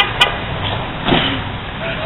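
Steady outdoor street noise, a constant rush with a faint low hum, with two sharp clicks at the very start.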